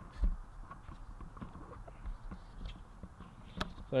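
Faint handling noise from a handheld camera: a low bump about a quarter second in, scattered light ticks and rustles, and a sharp click near the end.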